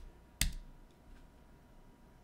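A single sharp key strike on a computer keyboard about half a second in, the Enter key running a typed command, with a lighter tap at the start.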